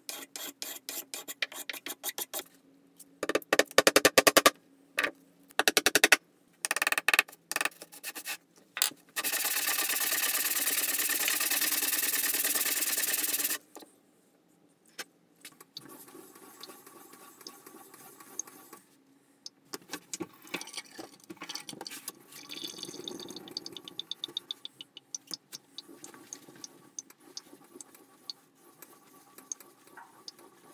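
A hand file rasping in quick strokes across the wooden body of a homemade router plane, in several bursts, the loudest a few seconds in; then a steady hiss for about four seconds. After that, softer rhythmic rubbing strokes on a wet sharpening stone.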